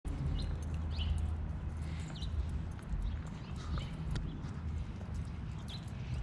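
Footsteps on pavement, irregular taps, over a steady low rumble, with a few short high chirps.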